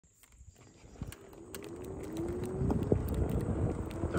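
A Ninebot electric rider pulling away over rough asphalt: a faint motor whine rises in pitch and then holds steady, over a growing tyre rumble with scattered clicks and knocks.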